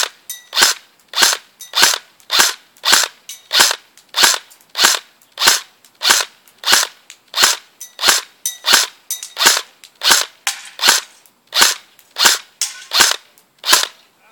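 M4-style rifle firing single shots in a steady string, about twenty-two sharp cracks at roughly one and a half per second, each with a short ringing tail.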